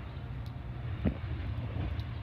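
Distant Metra commuter train passing, heard as a steady low rumble, with a sharp knock about a second in.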